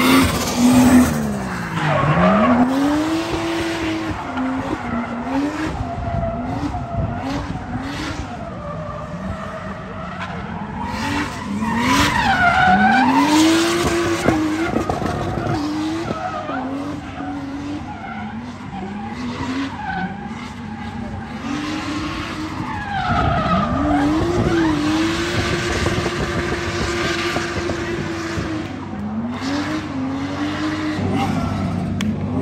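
Drift car's engine revving hard, its pitch climbing and dropping again and again as the throttle is worked, with tyres squealing as the car slides sideways through the corners.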